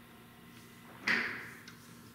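A man's single sharp breath about a second in, fading over about half a second, against quiet room tone. It is a reaction to the burn of a superhot chili pepper in his throat.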